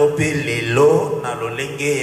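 A man's voice, the preacher's, going on in long, drawn-out syllables that slide in pitch.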